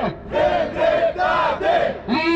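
Crowd of protesters chanting a slogan in unison in a steady rhythm, led by a man's voice through a microphone and loudspeakers.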